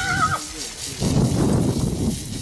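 A horse whinnying briefly at the start, a short high call, followed from about a second in by a rougher, noisy stretch of sound.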